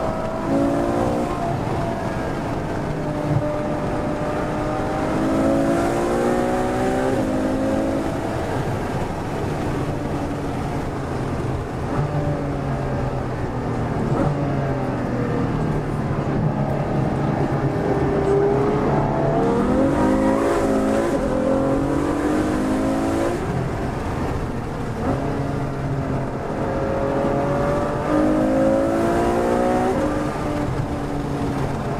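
Ferrari F12berlinetta's V12 with an aftermarket Capristo exhaust, heard from inside the cabin, pulling hard through the gears. The pitch climbs for several seconds, then drops back at each upshift, over and over.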